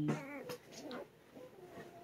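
Cane Corso puppies whimpering faintly, with a few short, wavering squeaks in the first second.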